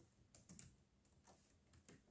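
Faint typing on a laptop keyboard: a handful of separate, unhurried keystrokes.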